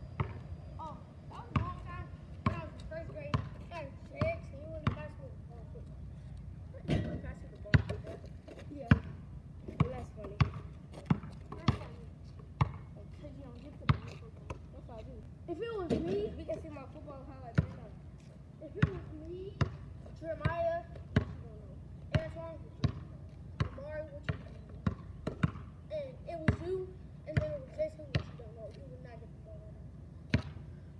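A basketball being dribbled on asphalt: a long run of sharp bounces, roughly one to two a second, with faint voices between them.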